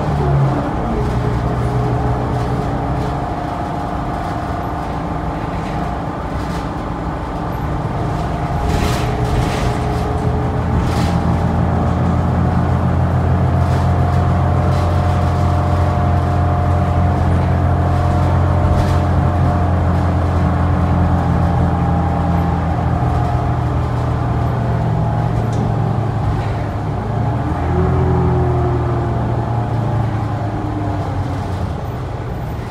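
The diesel engine and drivetrain of a New Flyer Xcelsior XD40 city bus, heard from inside the passenger cabin as the bus drives. The engine note falls back, then builds and holds as the bus gathers speed, and it rises again near the end. A few sharp rattles from the cabin fittings come through over the engine.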